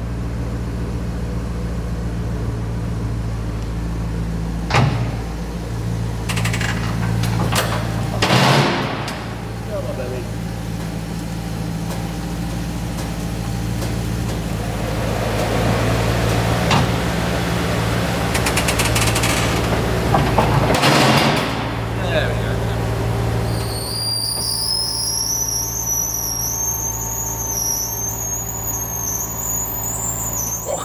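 Maserati Quattroporte's 4.2-litre V8 running at a steady idle as the car creeps onto an inspection lift, with a few knocks along the way. From about two-thirds through, a high whine rises slowly in pitch as the vehicle lift raises the car.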